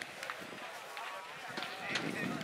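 Voices of footballers calling to one another across an open pitch, with a few short clicks.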